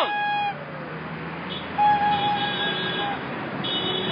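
Street traffic passing, a steady low rumble with long held high tones over it at the start, in the middle and near the end.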